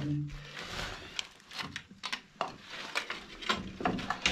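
Scattered crunches, scrapes and clicks of footsteps and movement over rubble and debris, a handful of short irregular sounds in a small echoing room.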